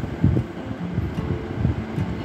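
Wind buffeting an outdoor microphone: an uneven low rumble that rises and falls in quick gusts.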